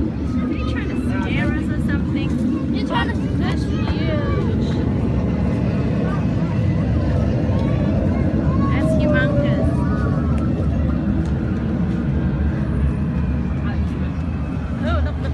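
Wind buffeting the microphone: a loud, steady low rumble, with faint voices of people talking underneath it.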